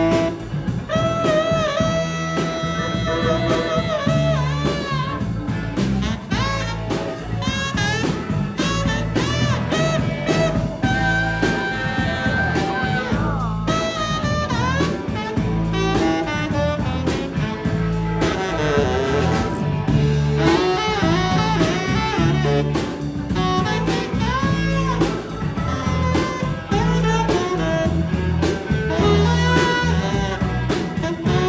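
Tenor saxophone playing a melody, wavering on held notes, over a drum kit and a low bass part in a steady beat.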